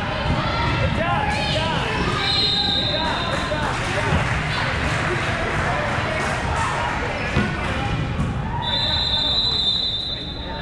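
Live indoor basketball game sounds in a large, echoing gym: a basketball bouncing on the court, shoes squeaking on the floor, and a steady mix of players' and spectators' voices. A long high-pitched tone sounds briefly after about two seconds and again for over a second near the end.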